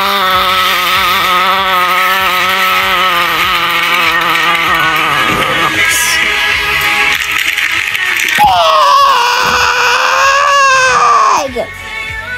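A voice holding one long, slightly wavering wordless note for about five seconds. A few seconds later a second drawn-out note slides down in pitch, levels off, then falls away.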